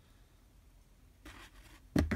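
Quiet room tone with a faint scratchy rustle a little over a second in, then a single sharp knock near the end: handling noise as the beetle tray and bin are moved.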